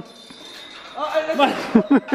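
A man's voice shouting encouragement, after about a second of quieter background noise in a large hall.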